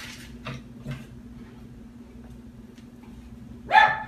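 A dog barking once near the end, a single short loud bark from a dog wanting to be let back into the house. Two faint knocks come in the first second.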